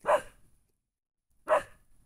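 Puppy barking twice: two short, sharp barks about a second and a half apart.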